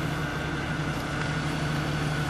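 A steady low mechanical hum with a faint steady high whine above it, like an engine idling.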